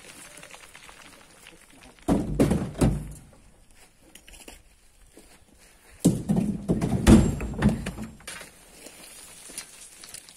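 Two bursts of low thudding and rumbling from loose earth and stones on a steep dirt slope: a short one about two seconds in and a longer, louder one from about six to eight seconds in.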